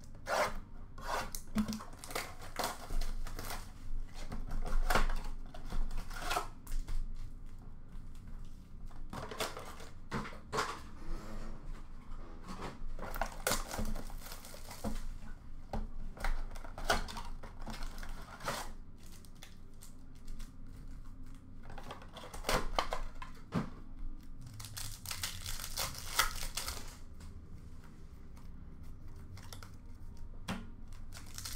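Cardboard and foil pack wrappers being torn open and crinkled as Upper Deck hockey card blaster boxes and packs are opened by hand, in irregular sharp rips and rustles, with a longer stretch of crinkling near the end.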